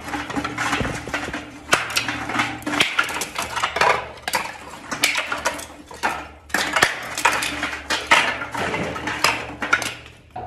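Terracotta bricks clinking and knocking against one another as they are set by hand into a ring lining a well shaft: irregular sharp clicks, about one or two a second. A steady low hum runs underneath.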